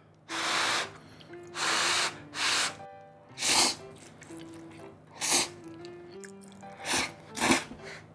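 A man slurping thick, chewy Jiro-style yakisoba noodles in about seven noisy slurps. The first few are long, the later ones short and sharp. Light background music with held notes plays under them.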